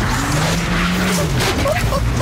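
A car driven hard, its tyres squealing and skidding over a noisy rush, while the engine note rises, holds and falls away.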